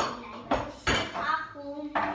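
Pots, pans and dishes clattering as they are handled in a kitchen cabinet: about four sharp knocks, each with a short metallic ring.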